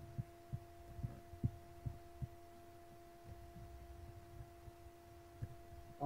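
A faint steady hum, with several soft low knocks in the first two and a half seconds and one more near the end.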